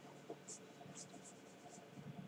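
Near silence: a few faint soft ticks and scrapes as a glass of beer is picked up from the desk and drunk from.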